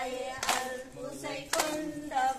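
Women singing a Tamil kummi folk song together, unaccompanied, with a sharp group hand clap about once a second keeping the dance's beat; two claps fall in these two seconds.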